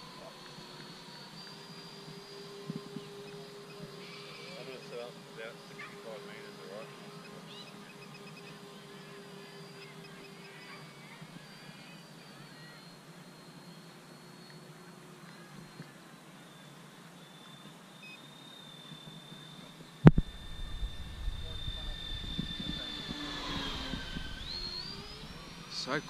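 Twin 70 mm 12-blade electric ducted fans of an FMS A-10 Thunderbolt II RC jet giving a quiet, steady high whine in flight. The pitch sinks, then sweeps up again near the end as the jet passes closer. A sudden thump about twenty seconds in is followed by a low rumble.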